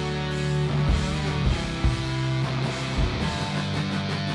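Live rock band playing an instrumental passage with no vocals: electric guitars sustaining chords, with a few low drum hits spread through it.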